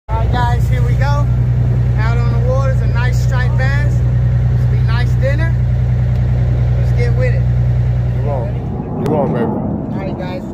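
Boat engine running steadily at speed, with people's voices over it; the engine sound stops about eight and a half seconds in.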